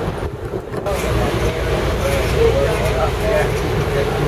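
Open-top double-decker tour bus moving along, heard from its upper deck: a steady engine and road rumble that grows fuller about a second in, with voices underneath.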